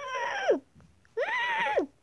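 A child's voice imitating a horse's whinny: two high vocal cries, the first sliding down in pitch, the second rising and then falling.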